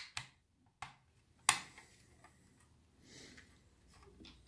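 A few light clicks and taps from a small die-cast model pickup truck and its tailgate being worked by hand, the loudest about a second and a half in.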